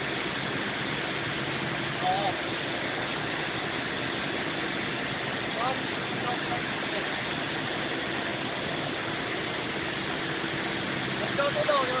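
Cessna 172's piston engine and propeller droning steadily in cruise flight, heard from inside the cockpit.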